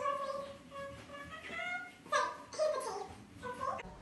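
Indistinct voices, quieter than close talk, with sliding pitches that could be singing or excited chatter.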